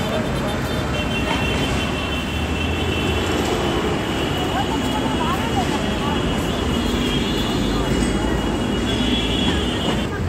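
Steady noise of busy city road traffic, with indistinct voices of passers-by mixed in.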